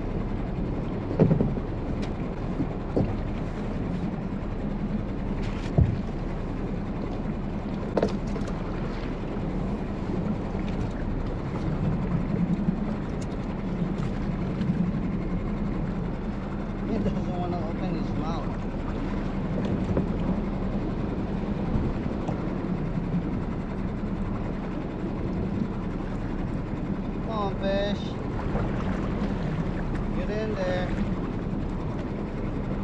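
Steady wind and sea noise around a small fishing skiff on open ocean, with a constant low hum underneath. A few sharp clicks and knocks from fishing tackle being handled come in the first eight seconds.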